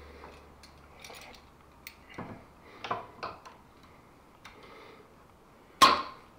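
Scattered light clicks and taps of hand tools and hardware being handled at a metal shelf bracket under a window sill, several around the middle and one sharp, louder knock just before the end.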